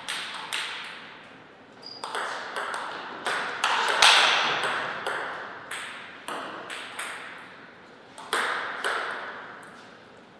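Table tennis play: a celluloid ping-pong ball knocking sharply off paddles and the table in a string of clicks, each ringing on in the hall's echo. The loudest knock comes about four seconds in.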